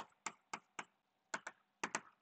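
Chalk tapping and clicking against a blackboard while letters are written: a series of short, faint clicks at uneven intervals.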